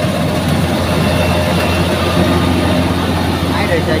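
Tracked rice combine harvester running while it cuts and threshes rice: a steady, loud engine and machinery drone.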